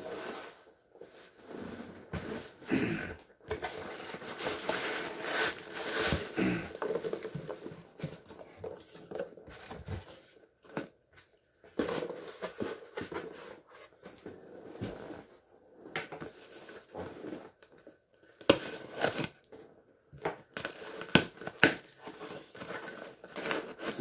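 Packing peanuts rustling and spilling as a cardboard shipping box is emptied, with cardboard boxes handled and knocked on a desk. Irregular rustling and scraping throughout, with sharp knocks, the loudest in the second half.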